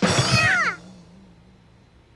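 A voice-acted cartoon cat's cry, falling in pitch and lasting under a second, over a low thud as the cat tumbles off a bucket. Then a low steady note of background music holds quietly.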